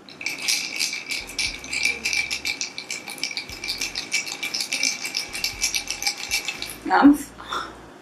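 Ice cubes rattling and clinking against a stemmed glass in a rapid run of clinks for about seven seconds, the glass ringing faintly under them. A short vocal sound follows near the end.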